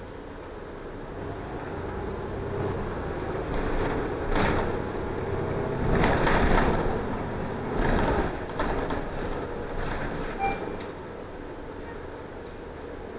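Ride noise of a moving CTA city bus, engine and road rumble with rattling. It swells into louder, rougher stretches about four and a half, six to seven and eight seconds in, and the stretch at six to seven seconds is the loudest.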